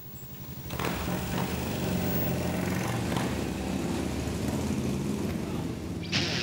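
Motorcycle engine running in street traffic, a steady low engine sound that grows louder about a second in and then holds.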